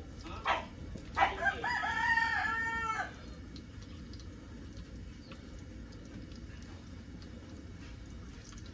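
A rooster crows once, starting about a second in. Its held final note breaks off abruptly about three seconds in, and after it only a faint, steady background remains.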